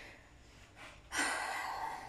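A woman's audible breath, drawn in sharply about a second in and lasting most of a second.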